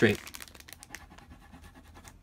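A figure-shaped crayon scribbling on paper in back-and-forth strokes: a faint, scratchy sound with a string of light ticks in the first second.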